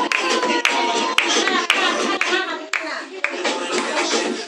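Several people clapping their hands in a steady rhythm, about two claps a second, over girls' voices.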